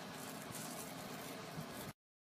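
Faint steady room hiss with no distinct sound in it, cut off abruptly into dead silence near the end.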